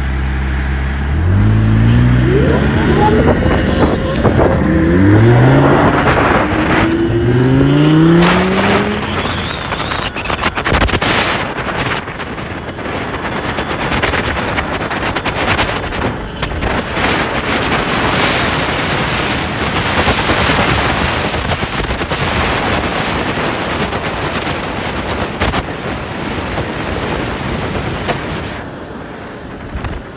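Lamborghini Huracán V10 idling, then launching hard and revving up through about four quick gear changes, each a rising pitch cut off by the shift. After about ten seconds the engine gives way to a steady loud rush of wind and road noise at speed.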